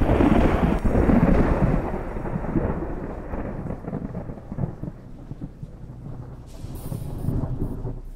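A thunderclap: it starts suddenly and loudly, then rumbles away over several seconds and swells again near the end.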